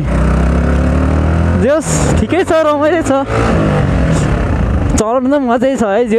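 Yamaha R15 V3 motorcycle's single-cylinder engine running at low road speed, its pitch falling twice as the throttle is eased off, with a man's voice talking over it in between.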